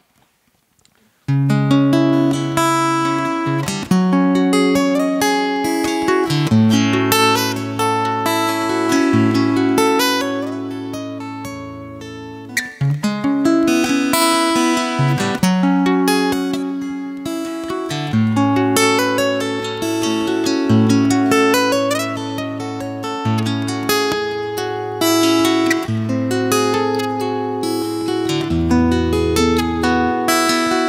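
Solo steel-string acoustic guitar, amplified, playing the strummed chordal introduction of a song without vocals; it starts abruptly about a second in after a brief silence.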